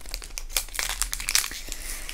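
Foil Pokémon TCG Evolutions booster pack wrapper crinkling irregularly as hands work it open.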